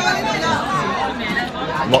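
Chatter of many diners talking at once in a large restaurant hall, with a short louder voice just before the end.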